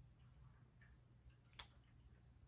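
Near silence with a few faint ticks and one sharper click about one and a half seconds in, from a small metal enamel pin being handled in the fingers.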